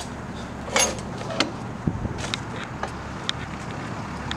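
Footsteps and light scuffs and clicks on a concrete lot, with one dull thump about two seconds in, over a steady low hum.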